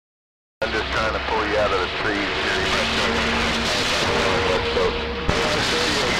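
A distant station's voice coming in over a CB radio speaker, faint and garbled under a steady hiss of static, with brief steady whistles through it. It is a long-distance skip contact received across the Pacific.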